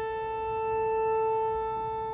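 Pipe organ of the 1897 W. W. Kimball, rebuilt by Buzard in 2007, holding a single sustained note on a solo stop, swelling to a peak about a second in and easing back.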